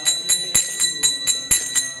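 Small hand cymbals (kartals) struck in a steady rhythm between chanted lines, about four strikes a second with a stronger stroke about once a second, each strike ringing.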